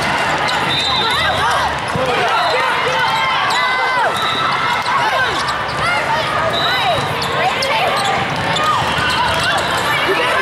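Din of a large hall full of volleyball play: many voices and player calls, with repeated sharp thumps of volleyballs being struck and hitting the floor.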